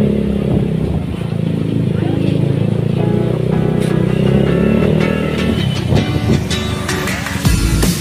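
Motorcycle engine running at low street speed, heard together with background music with pitched instruments.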